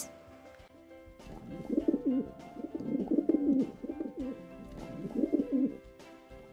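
Pigeons cooing: several low, rolling coos in bouts starting about a second and a half in, over soft background music.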